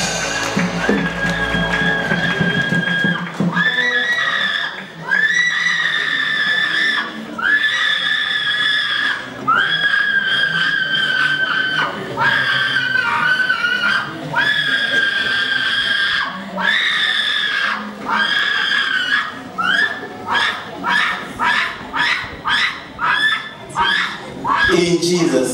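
A person's high-pitched wailing cries, each held about two seconds and repeated one after another, turning into shorter, quicker cries near the end.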